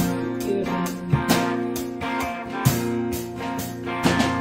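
Live band music led by guitars: held chords with strummed, sharply accented hits at uneven intervals, with no singing.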